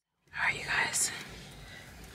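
A moment of silence, then faint whispering.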